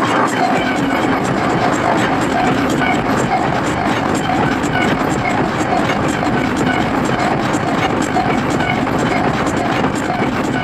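Industrial hardcore track: a loud, dense wall of machine-like noise over a repeating rhythmic pattern. A low bass layer comes in just after the start.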